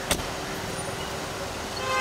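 Steady street traffic noise around a car, with a short sharp click just after the start.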